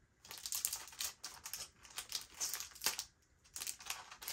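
A small press-on nail box being picked at and worked open by hand, its packaging crinkling and crackling in quick, irregular scratches, with a short pause about three seconds in.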